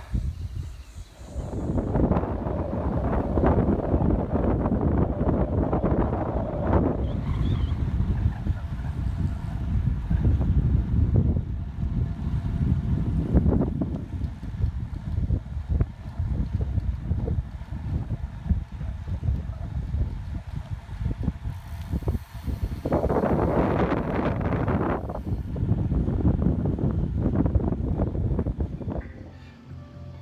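Wind buffeting the camera's microphone while riding a bicycle along a road: a loud, gusty rumble that rises and falls, with a harsher stretch about two-thirds of the way through.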